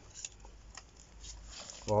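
Faint handling of a Pokémon trading card turned over in gloved hands: a light rustle with a few soft ticks. A man's voice says "Oh" right at the end.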